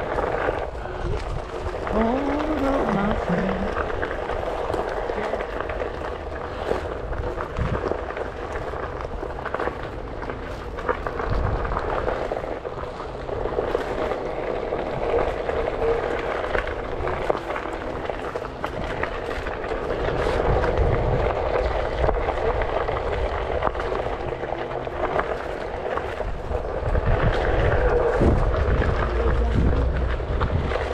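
A Onewheel electric board rolling along a gravel trail: the hub motor's whine wavers with speed over the crunch of the tyre on gravel. Wind rumbles on the microphone, heavier near the end.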